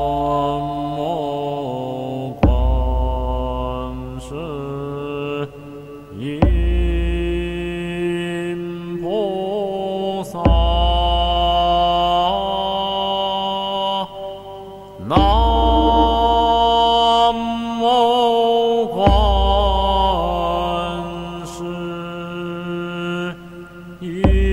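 Recorded Buddhist devotional chant: a voice singing long, drawn-out phrases over a low sustained accompaniment, a new phrase beginning about every four seconds.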